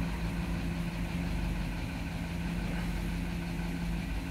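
Toyota Sequoia V8 idling steadily, a low even hum heard from inside the cab. Its cylinder 2 misfire has been repaired with a new ignition coil.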